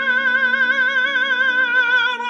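Male classical singer holding a high sustained note with even vibrato, over held piano chords.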